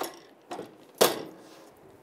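Heat press clamping shut: one sharp metallic clack about a second in, after a couple of lighter clicks.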